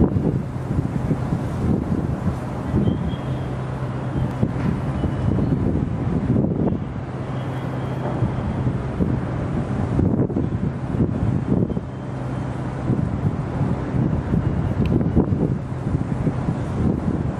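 Wind buffeting the microphone in uneven gusts, with a low steady hum underneath.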